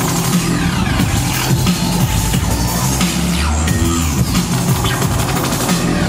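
Drum and bass DJ set played loud over a club sound system, with a heavy bass line under a dense beat.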